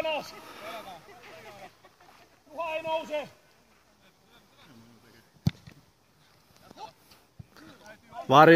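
A man's shout on the pitch about two and a half seconds in, then the sharp, single thud of a football being kicked about five and a half seconds in, with a lighter touch on the ball shortly before the end.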